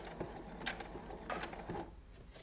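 Domestic sewing machine sewing a short run of zigzag stitches, its needle mechanism ticking rapidly, then stopping near the end.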